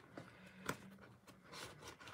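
Faint handling noises, with light rubbing and a few soft ticks and one sharper click about two-thirds of a second in, as objects are moved about off camera.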